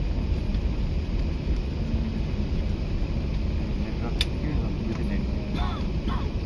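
Steady low rumble inside the passenger cabin of an Emirates Airbus A380 as it taxis after landing, with one sharp click about four seconds in.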